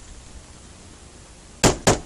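Two sharp knocks on a wooden door near the end, a quarter second apart, after a stretch of low background hiss.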